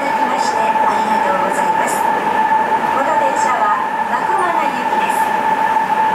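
Interior running noise of a Sapporo Namboku Line 5000 series rubber-tyred subway car under way between stations, with a steady high-pitched tone that holds one pitch over the running noise.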